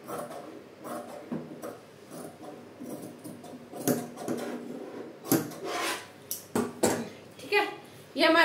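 Large steel tailoring scissors cutting through cloth on a wooden table, an irregular run of crunching snips along a curved line, with a few sharper, louder snips in the second half.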